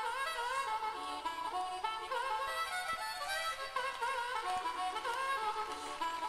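Solo harmonica playing a lively melodic intro to a rock song, with bent notes.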